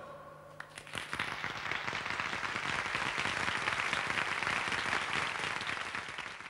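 Theatre audience applauding. The clapping starts about a second in, right after the song ends, and carries on as an even, dense patter.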